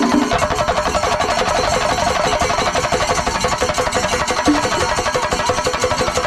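Singari melam percussion ensemble: many chenda drums beaten rapidly with sticks, together with ilathalam hand cymbals, in a loud, continuous, driving rhythm.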